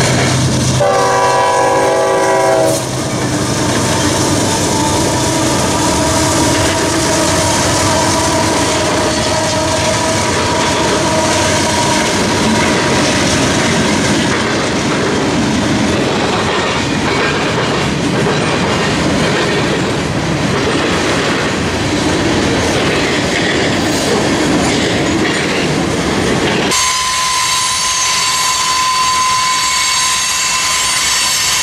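Union Pacific diesel freight train: a loud chord horn blast about a second in, lasting about two seconds, then the locomotives and freight cars rolling past with a steady rumble and clickety-clack of wheels over rail joints. Near the end the sound changes abruptly to another freight train passing, with a steady high squeal over the rolling noise.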